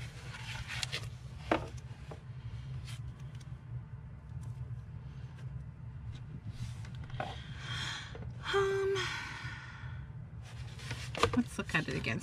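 Light handling of a hardback book and paper, a few soft clicks and taps over a steady low hum. A short sigh comes about eight seconds in.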